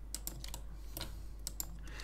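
Computer keyboard and mouse clicks, light irregular taps several times a second, over a faint steady low hum.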